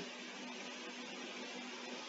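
Room tone of a home recording: a steady faint hiss with a low steady hum underneath, and no distinct sounds.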